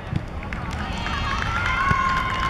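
Teenage footballers' voices calling out across the pitch, ending in one long drawn-out shout, over outdoor crowd noise with scattered footsteps.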